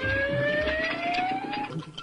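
Cartoon soundtrack: a slowly rising, whistle-like gliding tone over a hand-drum rhythm with low thumps. Both stop about three-quarters of the way through.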